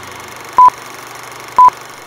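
Film-leader countdown sound effect: two short, high, pure beeps a second apart, one for each number, over a steady hiss.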